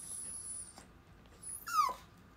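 A dog whining: a thin high whine in the first second, then a short, louder whine falling in pitch near the end.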